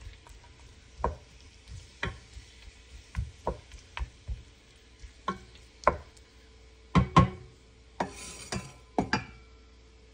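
Wooden spoon stirring and turning raw marinated pork pieces in a nonstick pot, knocking against the pot roughly once a second, with the loudest knocks about seven and nine seconds in.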